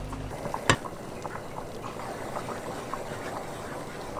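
Hot oil bubbling and crackling in a frying pan, heated for a roux (zaprška). There is one sharp knock about a second in.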